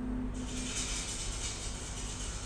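Thriller film soundtrack playing: a low held tone that drops away about a third of a second in, as a steady high hiss sets in suddenly and carries on.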